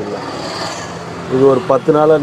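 A road vehicle going past, a rushing noise that swells and fades over about a second, then a man begins speaking.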